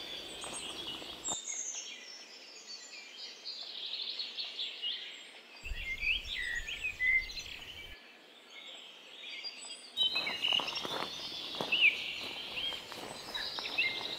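Small songbirds chirping and singing in quick, high rising and falling notes over faint outdoor background noise.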